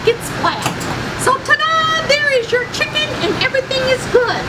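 Only speech: a woman talking in an animated voice, with a few drawn-out syllables in the middle.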